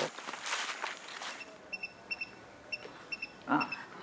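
Soft rustling in the first second, then a string of short, high chirps, several in quick pairs, from a small bird.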